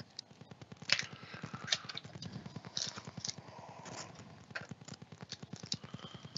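Plastic shrink wrap crinkling and crackling as it is slit and pulled off a cardboard trading-card box, with small scrapes and taps of the cardboard being handled.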